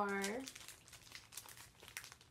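Clear plastic sleeves of sticker packs crinkling in the hands, a run of small irregular crackles.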